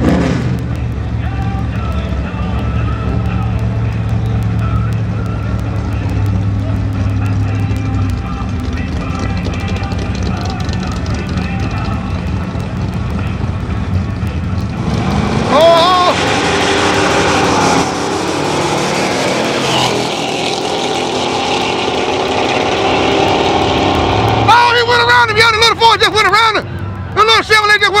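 Two pickup truck engines idle at the drag-strip starting line, then about halfway through launch together: the engines rev up sharply and run at full throttle down the strip. Near the end the engine sound falls away as the trucks pull into the distance.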